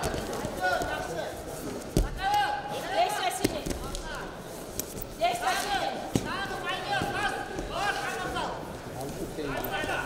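Voices calling out in a large hall during a freestyle wrestling bout, with a few sharp thuds of the wrestlers' bodies hitting the mat, about two, three and a half, and six seconds in.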